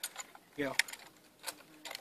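A few sharp metallic clicks and rattles from a Norinco M14 (M305) rifle as it is swung and brought to the shoulder. A man says "you know" in the middle.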